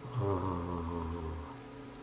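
A man's low, drawn-out hum of hesitation, like a closed-mouth "mmm", lasting about a second and a half and sinking slightly in pitch.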